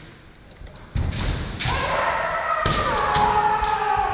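Kendo attack: a heavy stamp of a bare foot on the wooden floor about a second in, a sharp crack of a bamboo shinai strike, then a long drawn-out kiai shout that holds its pitch and sags slightly.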